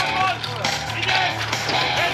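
Portable fire pump's engine running hard with a steady low drone, under shouting and cheering from the team and spectators.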